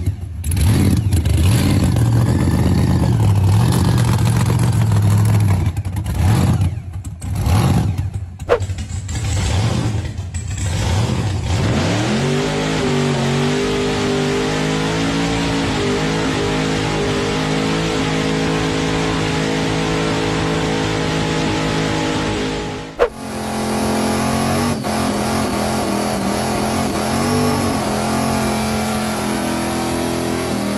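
Supercharged Chevrolet big-block V8 in a Holden VH, revved hard in short bursts with brief drops for the first ten seconds or so. It then climbs and is held at high revs through a long, steady burnout. The sound breaks off briefly about three-quarters of the way through and picks up again at high revs.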